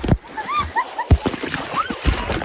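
Water splashing and spraying over people and onto the phone, with sharp knocks of water hitting the microphone and short high-pitched cries.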